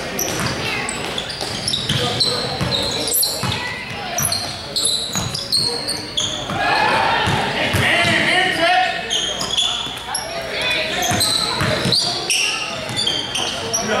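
Sneakers squeaking repeatedly on a hardwood gym floor and a basketball bouncing during play, with players' shouts echoing through the hall.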